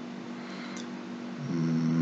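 A faint steady background hum, then about one and a half seconds in a man's voice starts a drawn-out hum on one held pitch, a hesitation sound just before he speaks again.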